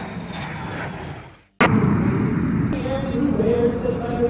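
Air-show jet noise: a rush that fades away, then after an abrupt cut with a click, a louder stretch of jet noise. About two-thirds of the way in, a steady droning tone joins it.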